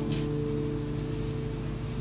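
Acoustic guitar's last chord ringing out and slowly fading as the song ends.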